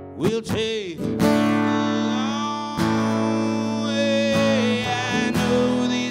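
Acoustic guitar strummed in a song, with a man's voice sliding up and down and then holding long notes without words over it.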